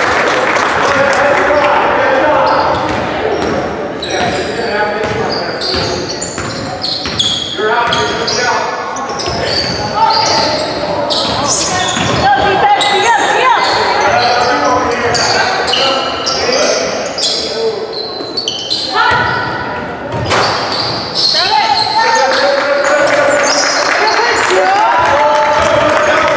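Basketball game sounds in a large gymnasium: a ball bouncing on the hardwood floor again and again, with indistinct voices of players and spectators carrying through the hall.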